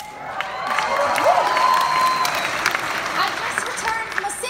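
Audience applauding in a large hall, swelling over the first second and holding steady, with a few cheering voices in the middle.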